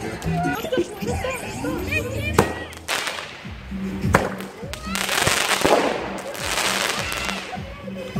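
Fireworks going off: two sharp bangs and several stretches of hissing crackle, with voices and music underneath.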